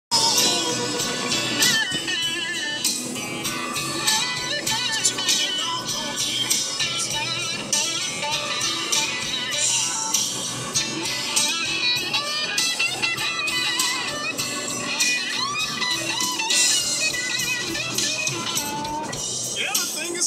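Background music playing throughout, with no break.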